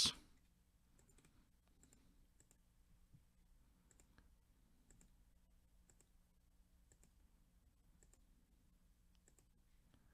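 Faint computer mouse clicks, repeated about once a second, from clicking a button over and over on a screen.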